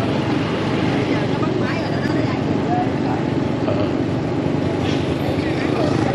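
Motorbike riding through city traffic: a steady run of engine, road and wind noise, with other scooters passing close by.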